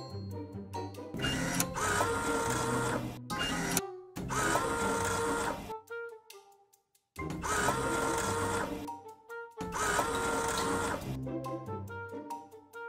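Vending machine bill acceptor motor whirring in four bursts of about two seconds each, with short pauses between, over background music.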